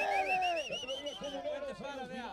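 People's voices calling out and chattering: one drawn-out, high-pitched shout over the first second or so, then shorter calls.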